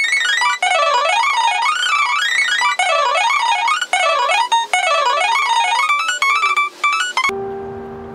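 Nord digital piano playing a fast etude passage of rising and falling runs, the same passage repeated several times over. It stops about seven seconds in.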